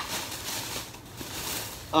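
Plastic bag rustling softly as a hand rummages in it.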